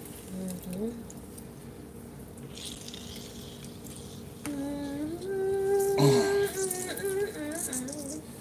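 A person humming a tune with long held notes through the second half. Earlier, a faint brief hiss of lemon juice squirting from a hand-held citrus squeezer onto the salad.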